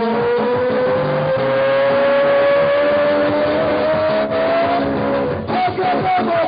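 Dance music with a long held lead note that slowly glides upward in pitch for about five seconds over the accompaniment, then breaks off briefly near the end and comes back wavering.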